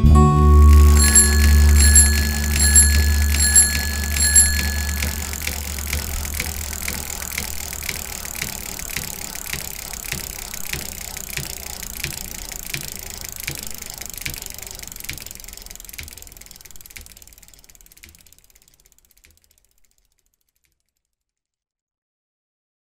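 A bicycle bell rung five times over a fading low musical note, then the steady ticking of a coasting bicycle freewheel that slowly fades out to silence.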